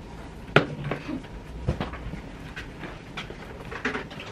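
Knocks and clicks of a drawing board and papers being handled at a desk, the loudest about half a second in, over low room noise.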